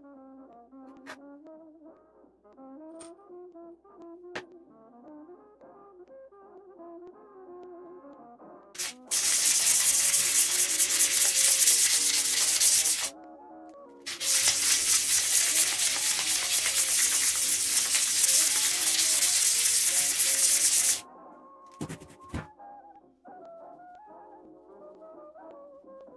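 Abrasive paper scraped by hand over a small brass plane part, in two long stretches of loud, even rasping with a short pause between. Soft big-band brass music plays underneath.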